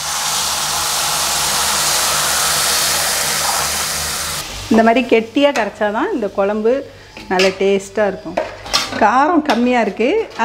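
Loud sizzle of a wet tamarind masala paste poured into hot oil and fried shallots in a steel kadai. The sizzle runs for about four and a half seconds, then dies away and a voice speaks.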